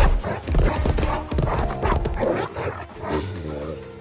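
Vocal sounds of a giant bulldog over dramatic score music, opening with a heavy low thud as the dog lunges toward the camera.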